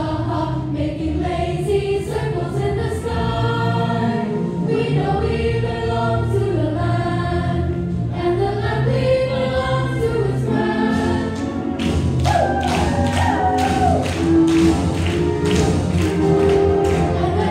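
A choir of school students singing a show tune together over a low sustained accompaniment. From about twelve seconds in, sharp regular percussive beats join the singing.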